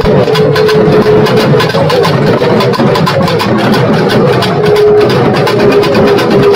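Procession drum band of shoulder-slung barrel drums struck with sticks, playing a fast, dense rhythm. A held melodic note sounds above the drumming at the start and again near the end.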